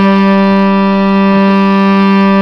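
Hurdy-gurdy with its wheel turning, sounding a steady drone chord of several bowed strings held at fixed pitch, the trompette string among them as it is checked for tune.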